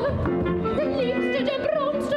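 Female operatic singing with a wide, wavering vibrato in short phrases, over instruments holding steady notes beneath.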